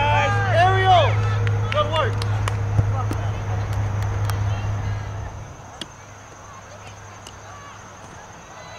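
High-pitched shouting voices in the first couple of seconds, then a few sharp thuds of a soccer ball being kicked, over a steady low rumble that drops away about five and a half seconds in.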